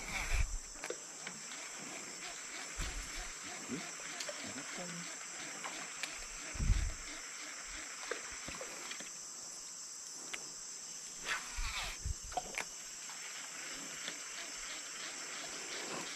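Forest insects droning steadily at a high pitch, with a few brief low thumps: one about half a second in, a louder one around seven seconds, and another around twelve seconds.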